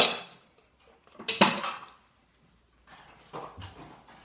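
Glassware and dishes being handled on a kitchen counter: a sharp clink right at the start, a longer clatter about a second and a half in, then a few faint knocks.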